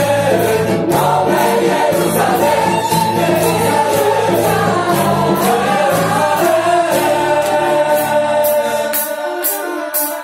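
A live Christian worship song: a band with guitars and a violin playing over a steady beat while many voices sing together like a choir. The bass drops away about nine seconds in.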